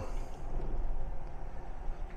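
Midea U-shaped 12,000 BTU inverter window air conditioner running with its fan on low and its variable-speed compressor at a slow speed: a steady low hum.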